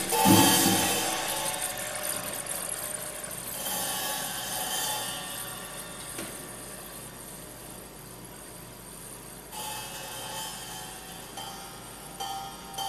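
Sparse, quiet improvised percussion music: a struck hit just after the start dies away, then faint ringing tones come in and fade, twice.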